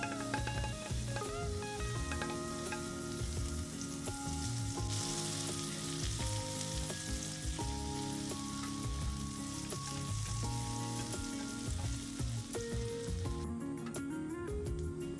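Butter sizzling as it melts and foams in a frying pan, stirred with a silicone whisk; the sizzle grows louder about five seconds in as the butter foams up and eases near the end. Background music plays under it.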